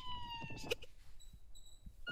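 A siren-like wailing tone sliding down in pitch and fading out about three quarters of a second in, followed by two short high beeps.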